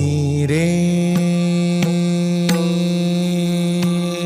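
Odissi music accompaniment: a singer slides up into one long held note over a steady drone, with a few light, sharp strikes in between.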